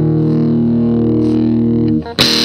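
Electric guitar on its neck pickup played through a Boss Metal Zone MT-2 distortion pedal plugged straight into the amp: one distorted chord held and sustaining steadily, dark in tone because the pedal's treble is turned all the way down. The chord stops just before the end.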